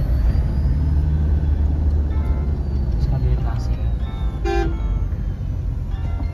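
Steady low rumble of a car's engine and road noise heard from inside the cabin, with a few short vehicle horn honks from surrounding traffic. The loudest honk comes about four and a half seconds in.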